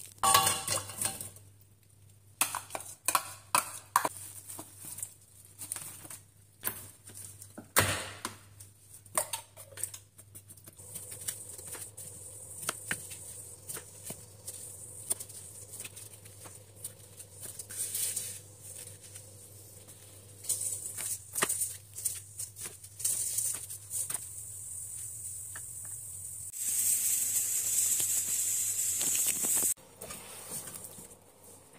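Kitchen prep sounds: chopped vegetables dropped into a stainless steel pot, then a knife cutting cucumber on a plastic cutting board in a run of quick clicks and knocks. Near the end a loud steady hiss takes over for about three seconds, and a low hum runs underneath throughout.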